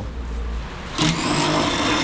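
Cordless drill motor running with a steady whine for about a second, starting about a second in, as it backs out a screw holding the patio heater's mounting bracket.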